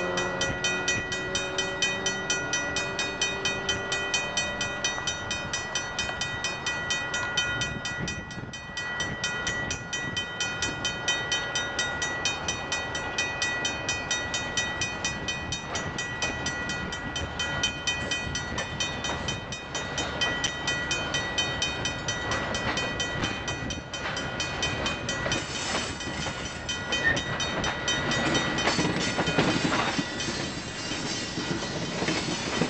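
Freight cars rolling past with wheel and rail noise, under the rapid, steady ringing of a level-crossing bell. A falling engine drone fades out over the first few seconds, and the rail noise grows louder near the end.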